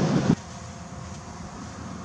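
Wind buffeting the microphone with a low rumble, cutting off suddenly about a third of a second in, then a quieter steady outdoor rumble.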